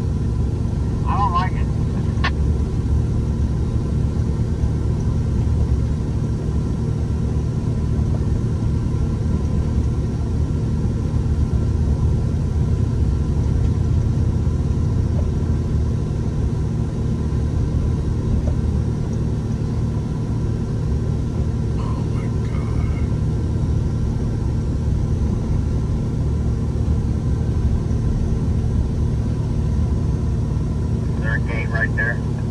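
Steady low rumble of a truck driving along a road, heard from inside the cab: engine and road noise running evenly throughout.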